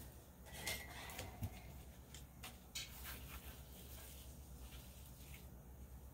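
Faint, scattered light taps and scrapes of handling: wooden craft sticks working on plastic sheeting to scrape up spilled resin.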